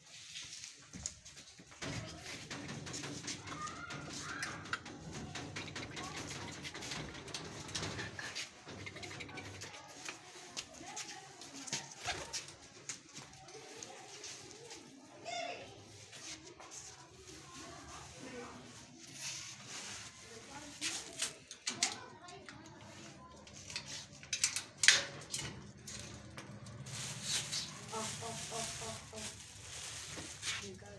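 Domestic pigeons cooing, with a few sharp knocks, the loudest about 25 seconds in.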